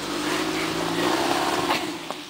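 A motor vehicle's engine running with a steady hum, stopping near the end.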